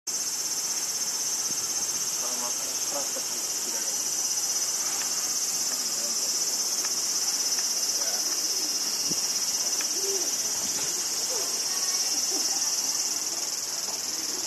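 A dense chorus of insects singing outdoors: a steady, high-pitched shrill that doesn't let up. Faint distant voices come and go underneath.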